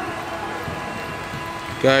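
Steady background noise of the covered pitch during play, a hiss with a faint constant hum and no distinct knocks. A man's voice commentating comes in near the end.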